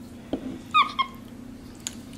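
Capuchin monkey giving two short high-pitched squeaks about a quarter of a second apart, the first bending down slightly in pitch, over a steady low hum.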